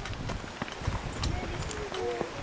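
Footsteps of people walking on a dirt trail through brush, an uneven run of soft thuds and light crackles.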